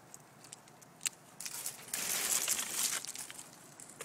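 Close rustling and brushing right at the microphone, loudest for about a second and a half in the middle, with a few light clicks before it. It is the sound of a sleeve and dry grapevine canes rubbing against the handheld camera.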